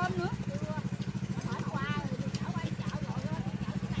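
Small engine running steadily with a fast, even throb: the motor of a pump draining the pond. Faint voices talk over it.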